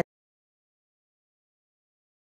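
Silence: the sound track drops to nothing, with no sound at all.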